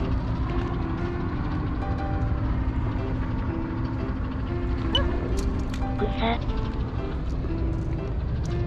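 Light background music with held, stepping notes over a steady low rumble of wind on the microphone, with a brief snatch of voice about five seconds in.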